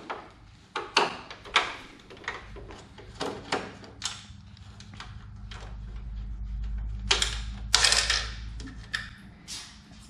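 Screwdriver and hands working screws out of the back of a plastic Toyota Tacoma factory grille: scattered sharp clicks and knocks of plastic. Two longer scraping rattles come about three quarters of the way through.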